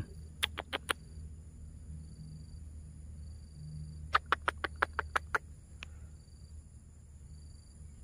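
Two quick runs of short, sharp clicks, four near the start and about eight more around four to five seconds in, over a faint, steady high insect chirring.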